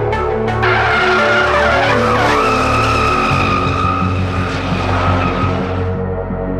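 Drift car sliding, its tyres screeching and engine running hard, mixed with background music. The tyre and engine sound fades away near the end, leaving the music.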